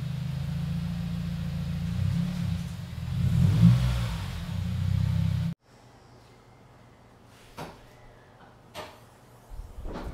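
A 2021 Subaru WRX's turbocharged flat-four engine running at low revs as the car creeps up onto race ramps, the note swelling briefly under a little throttle a few seconds in. The engine sound stops abruptly about five and a half seconds in, followed by quiet with two faint clicks.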